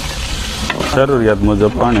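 Water poured from a jug into hot oil and spices in a large aluminium pot, which hiss and sizzle hard for about the first second before the sizzle eases. This is the water going into the tadka (spiced oil tempering) for a curry. A voice runs over the second half.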